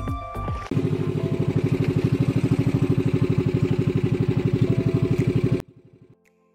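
Outrigger boat's engine running steadily, a fast even chugging of about a dozen beats a second that starts about a second in and cuts off suddenly near the end.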